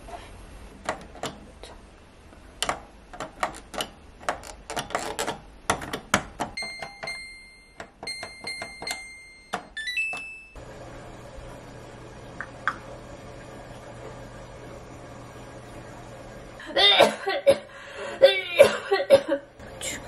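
Washing machine control panel: clicks and knocks, then a series of electronic beeps as its buttons are pressed and the programme dial is turned. About ten seconds in, a steady low hum starts as the machine begins running. A louder burst of sound comes near the end.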